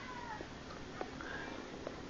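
Faint animal calls, falling in pitch, at the very start and again briefly past the middle, over a low steady hum. A single light click about a second in.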